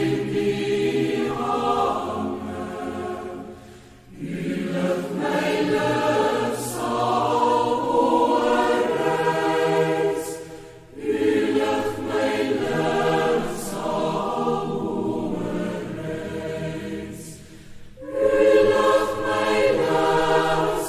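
A choir singing a slow song in long held phrases, with a short break about every seven seconds.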